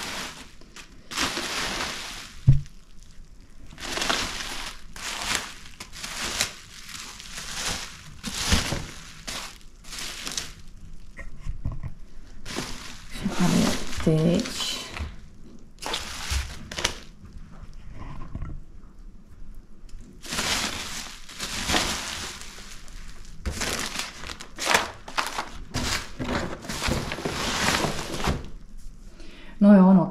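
Plastic bubble wrap crinkling and rustling as a parcel is pulled open by hand, in irregular bursts with short pauses. A single sharp knock about two and a half seconds in.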